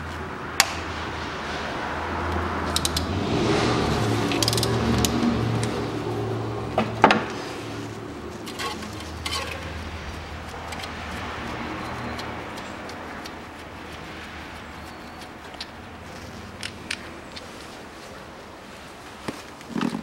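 Socket wrench and hand tools working the timing-belt idler pulley bolt loose and lifting the pulley off, with scattered metallic clicks and one sharp knock about seven seconds in, over a steady low hum.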